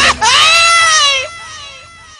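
A high-pitched, crying-like vocal wail: one long drawn-out cry that rises and then sags in pitch for about a second, then drops to a faint trailing whimper.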